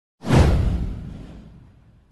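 A whoosh sound effect with a deep low boom. It comes in suddenly about a quarter of a second in, slides down in pitch, and fades away over about a second and a half.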